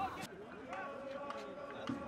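Faint ambience from the ground: distant voices of players and spectators, including one drawn-out call held for over a second.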